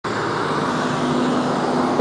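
Steady street traffic noise: a continuous road-noise rush from passing vehicles with a faint low steady hum underneath.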